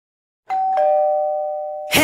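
A two-tone chime: a higher note rings, then a lower one a moment later, both held and slowly fading. Just before the end, loud rock music cuts in.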